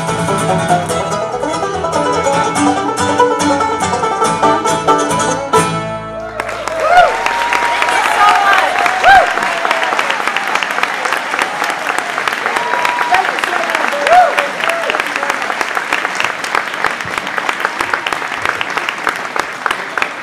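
Acoustic bluegrass band of fiddle, banjo, mandolin, guitar and upright bass playing the final bars of a song, which ends about six seconds in. A live audience then applauds and cheers with whoops and whistles for the rest of the time.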